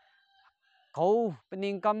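A rooster crowing faintly in the distance for about the first second, during a pause in a man's speech.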